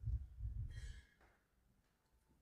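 A person's exhaled breath close to a microphone: a low puff lasting about a second, with a short hiss near its end.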